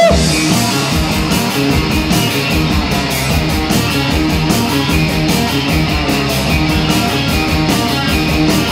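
Live rock band playing an instrumental passage: electric guitars over drums, with a steady beat on the cymbals. No singing.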